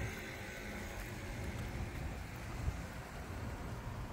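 Outdoor street background noise: an even hiss over a low, uneven rumble of wind on the microphone.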